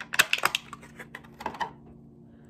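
Thin clear plastic blister tray crackling and clicking as an action figure is pried out of it: a quick flurry of sharp clicks in the first half second, then a few more about a second and a half in.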